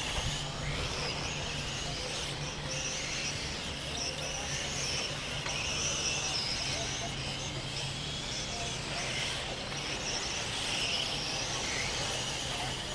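Electric 1/10-scale M-chassis RC cars on 21.5-turn brushless motors, their motors and gears whining as they run the circuit, the high whine swelling and fading as cars accelerate, brake and pass. A steady low hum lies underneath.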